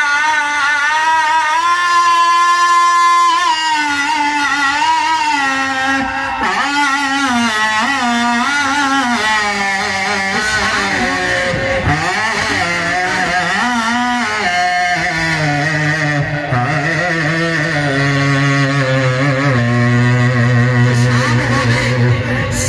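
A man singing a naat, an Urdu devotional song, unaccompanied into a microphone, with long, wavering, ornamented held notes. A low steady drone joins underneath in the second half.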